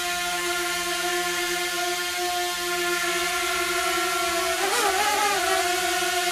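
DJI Mini 2 quadcopter with propeller guards fitted, hovering: its propellers make a steady whine of several held tones.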